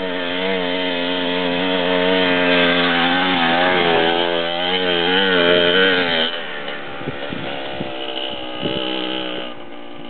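Dirt bike engine running as the bike rides up and past, its pitch rising and falling with the throttle. It is loudest for the first six seconds, then drops off suddenly as the bike goes by and fades as it rides away.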